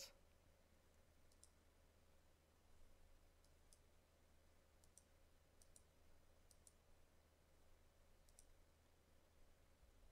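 Near silence with scattered faint computer mouse clicks, about eight of them, some in quick pairs, over a low steady hum.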